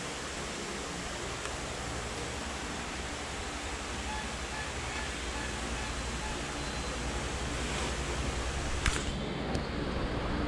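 A steady, even hiss of background noise with one sharp click near the end.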